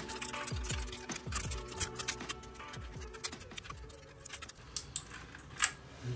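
Background music with a falling bass note repeating about every second, over scattered small plastic clicks of keycaps being pulled off and pressed onto a mechanical keyboard's switches.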